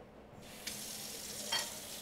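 Kitchen sink tap turned on about half a second in, then water running steadily into the sink, briefly louder about halfway through.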